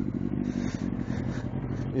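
Motorcycle engine running steadily at low road speed, heard from on the bike, with patches of hiss over it.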